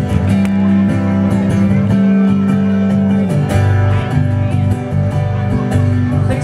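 A live band playing guitar music, with held, strummed chords and a chord change about three and a half seconds in.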